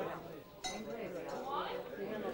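Indistinct voices talking in a crowded room, with a sharp, ringing clink about two-thirds of a second in.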